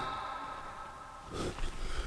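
Quiet court room tone. About a second and a half in comes a short, sharp breath from the player as he moves in for the shot, followed by a couple of faint ticks.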